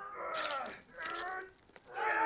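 Two strained groans from a man grappling in a fight, breathy and effortful, with a short silence after the second.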